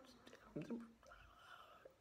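Near silence: room tone, with a brief soft murmur from a voice about half a second in.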